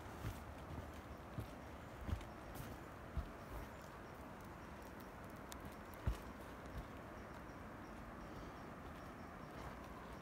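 Scattered soft low thumps at uneven gaps, the loudest about six seconds in, over a steady low rushing hiss.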